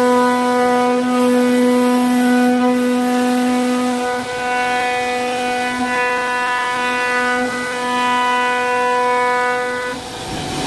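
CNC router spindle running with a steady, even whine as its bit routes grooves into a wooden door panel. The whine dips briefly about four seconds in.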